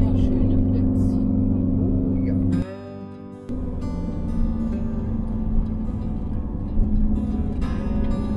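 Steady low drone of a motorhome's engine and road noise heard from inside the cab. After about two and a half seconds it cuts out, and after a brief quieter gap soft acoustic guitar background music takes over.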